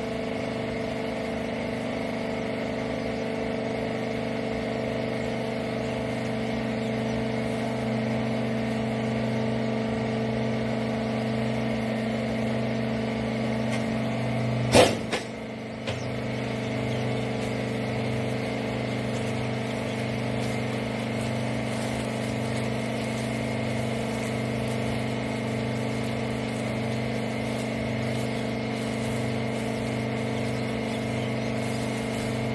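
Hydraulic rag baler press running, its pump motor giving a steady hum. About halfway through there is one sharp, loud clack with a brief hiss, the hum dips for a moment, a smaller click follows, and then the hum resumes.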